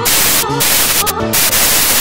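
Loud, even hiss of static that cuts in suddenly over a recorded female vocal solo with orchestra, drowning it out. The song shows through only in two brief gaps.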